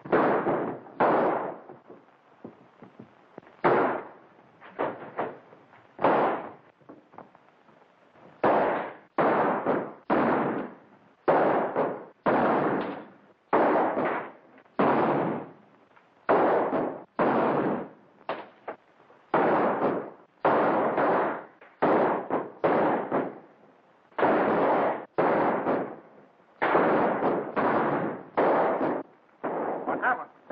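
Gunshots in a shootout: dozens of them, one or two a second, sometimes two in quick succession, each dying away in about half a second.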